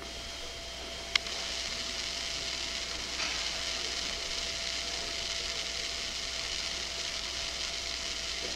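Steady hiss of a covert body-wire tape recording played back in a pause between lines, with a faint steady tone under it and a single sharp click about a second in.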